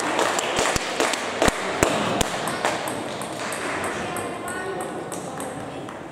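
Table tennis ball clicking sharply on the table and bats, with several hard hits in the first couple of seconds and then a quicker run of lighter ticks. Voices carry in the background of a large echoing hall.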